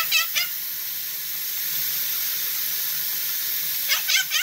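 Quaker parrot giving a quick run of three or four short, high chirps at the start and another run of four near the end, over a steady hiss.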